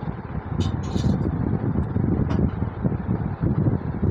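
Wind buffeting the microphone: a loud, uneven low rumble, with a few short crackles.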